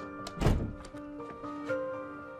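A wooden door pushed shut with a single thud about half a second in, over background music of held notes.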